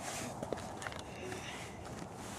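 Faint footsteps and scuffs on rocky ground: a few light ticks over a steady low hiss.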